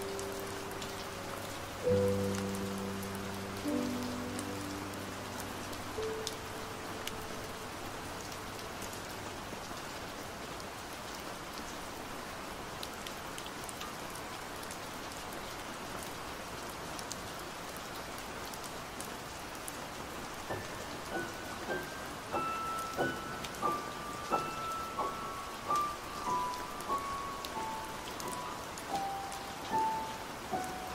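Steady rain with piano music over it. A low piano chord sounds about two seconds in and dies away by about ten seconds, leaving rain alone. From about twenty seconds in, a slow high melody of single notes plays over the rain.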